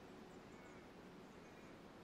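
Near silence: faint, even outdoor background hiss.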